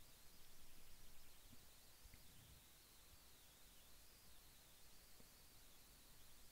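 Near silence: room tone with a faint, high-pitched whine that wavers in pitch.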